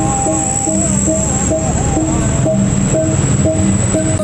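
Balinese gamelan music playing a repeating pattern of short struck metal notes, with a steady high thin tone above it.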